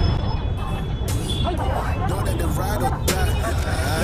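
Busy street ambience: many voices chattering over a steady low rumble of motorbike and auto-rickshaw traffic.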